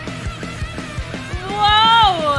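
Live rock band music with a steady kick drum beating about four times a second. Near the end a loud, high voice rises into a held cry that then slides down.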